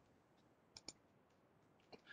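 Near silence: room tone, with two faint quick clicks just under a second in as the presentation slide is advanced.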